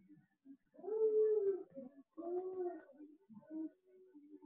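A domestic pet, likely a cat, calling twice, each call a drawn-out note that rises and falls in pitch, about a second and a half apart.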